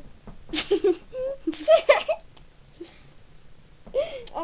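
Giggling in two short bursts during the first half, each a few quick pitched laughs.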